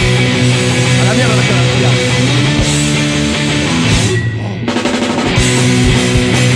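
Rock band music with guitars and drums, with a brief drop-out of the upper sound about four seconds in before the full band comes back.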